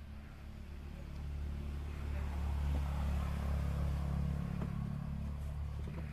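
Low rumble of a passing motor vehicle, building to its loudest around the middle and fading toward the end.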